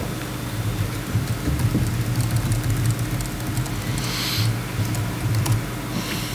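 Light laptop keyboard typing, scattered faint key clicks, over a steady low hum in the hall, with a brief hiss about four seconds in.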